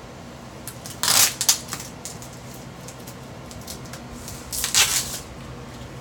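Knife slitting packing tape on a cardboard shipping box, with the tape tearing: two short rasping bursts, about a second in and again near the end.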